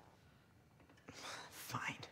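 A person's short, breathy whispered vocal sound about a second in, with a brief rising voiced part near the end, over faint room tone.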